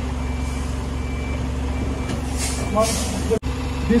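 A vehicle reversing alarm sounds repeated high-pitched beeps over the low, steady hum of an idling diesel engine. The source is most likely a terminal tractor backing a semi-trailer onto a rail pocket wagon.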